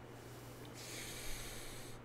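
A man breathing in through his nose in a long, faint sniff that starts about two-thirds of a second in, with his sinuses congested.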